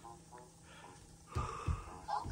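Quiet room with a couple of faint, breathy vocal sounds, then a few dull low thumps in the last half-second.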